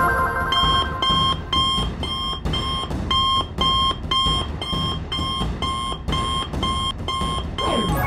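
Electronic alarm beeping about twice a second, each beep a short steady two-tone pip, starting about half a second in: a cartoon alert signalling a call for help to the supercar.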